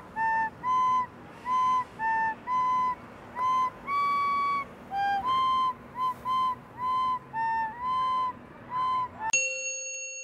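A recorder playing a simple tune of short, breathy notes, mostly on one pitch with a few higher and lower notes and one longer held note about four seconds in. Near the end a single bright chime rings out and fades.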